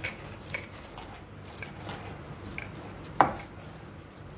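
Wooden rolling pin rolled back and forth over taro leaves on a granite counter, giving a string of light clicks and knocks, with a sharper knock about three seconds in; glass bangles on the wrists clink along with the strokes.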